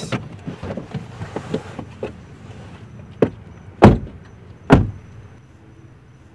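A car door slammed shut three times in quick succession, the second and third slams the loudest, after some light handling clicks.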